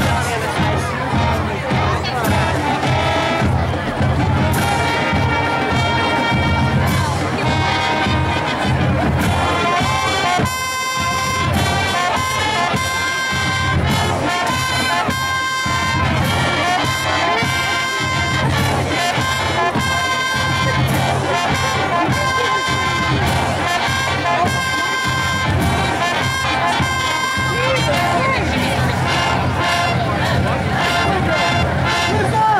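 High school marching band playing, with trumpets and other brass holding sustained notes over steady drums. A brief break comes about ten seconds in before the band plays on.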